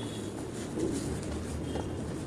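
Close-miked chewing of a mouthful of food with the lips closed: soft, continuous low mouth and jaw sounds with slight irregular swells.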